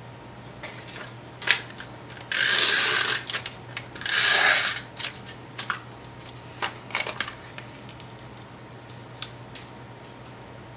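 An adhesive tape runner drawn twice along cardstock, two raspy strokes of a bit under a second each, about two and four seconds in, laying down adhesive to back a printed map piece. Light paper-handling clicks and taps come before and after.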